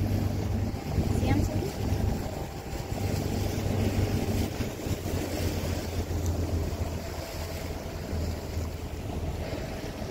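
A boat's engine running with a steady low hum, under wind buffeting the microphone and water washing along the hull.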